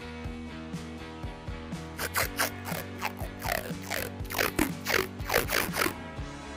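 A felt-tip permanent marker squeaking as it is rubbed along the fret tops, inking the frets for levelling. From about two seconds in, it makes a quick run of loud strokes, each falling in pitch. Background music plays throughout.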